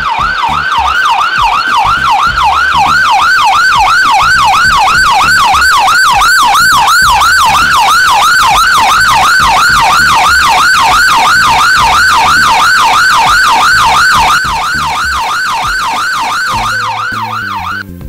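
Emergency-vehicle siren in a fast yelp, about three rising-and-falling sweeps a second. It drops slightly in level about 14 seconds in and cuts off just before the end.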